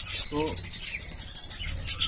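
Peach-faced lovebirds chattering with rapid high-pitched chirps and squeaks, with a thin high tone coming and going.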